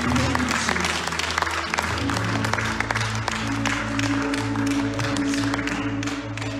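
Live worship band playing held keyboard and bass chords, with a change of chord about two seconds in, while people clap along.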